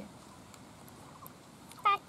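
Quiet background for most of the stretch, then near the end a short, loud, high-pitched voice call that rises and falls.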